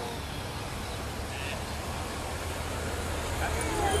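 Honda Gold Wing GL1800 motorcycles' flat-six engines running at low speed, a steady low rumble under a light outdoor hiss, with a brief faint high chirp about a second and a half in.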